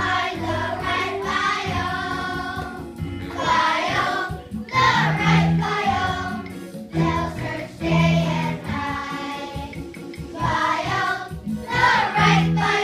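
A choir of children singing a song together over musical accompaniment with a steady beat.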